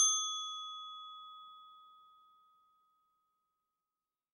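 A single bell-like ding, struck just as the music cuts off, ringing with a clear tone that fades away over about two seconds.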